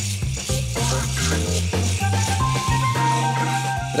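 Background music with the rattling buzz of a rotary electric shaver running against facial stubble.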